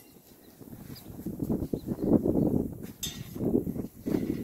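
Irregular knocks and scuffs of a hot powder-coated steel bracket being lifted out of an oven on a wire hook and hung up, with a brief metallic clink about three seconds in.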